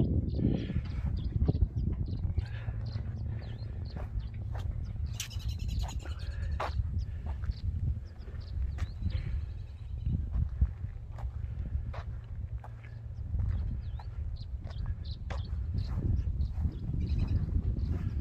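Wind noise on the microphone outdoors, a steady low rumble, with short bird chirps now and then.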